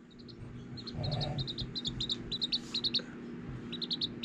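Small pet bird peeping: short, high chirps coming several a second in quick clusters.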